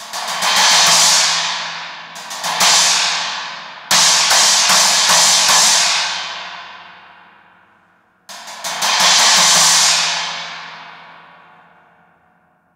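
A 20-inch Meinl Byzance Extra Dry China cymbal struck with a wooden drumstick in four bursts of hits, each crash ringing out and fading over several seconds. The last crash dies away to nothing near the end.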